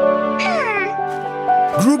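Gentle cartoon background music with held notes, and about half a second in a short pitched sound effect that falls steeply in pitch.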